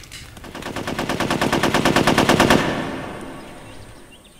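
A rapid, evenly spaced rattle of sharp beats, about ten a second, that swells up over two seconds and then fades away.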